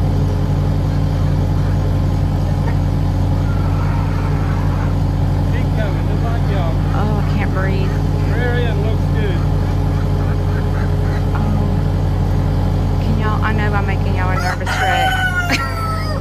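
Takeuchi TL8 compact track loader's diesel engine running at a steady pace while it carries a load. Chickens can be heard over it, with a rooster crowing near the end.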